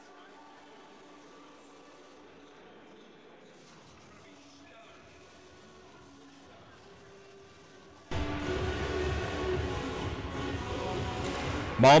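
Arena music playing during a stoppage in an ice rink, faint at first, then suddenly much louder from about eight seconds in over the low hum of the rink.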